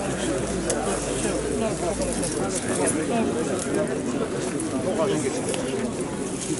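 Many men talking at once in a crowd, an unbroken murmur of overlapping voices with no single clear speaker.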